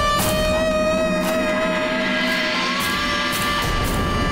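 Background score music: long held notes over a regular pulse of strikes, about two a second.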